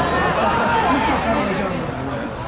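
Indistinct voices calling and chattering at a football match, over steady background noise.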